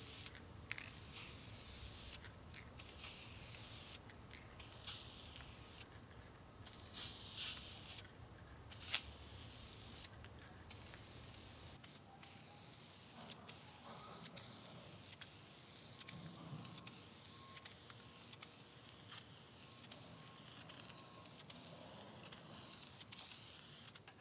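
Aerosol spray can of clear satin lacquer hissing as it sprays, in repeated bursts with short pauses, then more steadily in the second half.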